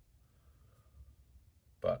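Near silence: room tone, ending in a single short spoken word.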